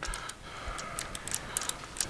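Light, irregular metal clicks, several a second, as a rocker arm is set back on an LS2 cylinder head and its bolt is run down by hand with a small tool.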